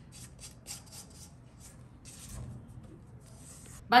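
Spatula scraping cake batter off the sides of a stainless-steel stand-mixer bowl and whisk, with the mixer stopped: a run of soft, short scrapes, closer together in the first half and sparser after.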